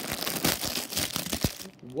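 Clear plastic Happy Meal toy bag crinkling and tearing as it is pulled open by hand: a dense run of sharp crackles that stops near the end.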